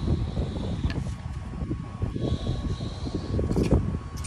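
Wind buffeting the microphone, an uneven low rumble that rises and falls.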